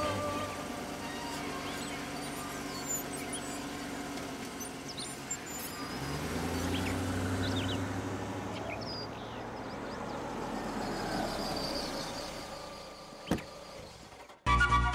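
Toyota Innova engine running at idle, its low hum swelling about six seconds in and fading out around ten seconds. A single sharp click comes near the end.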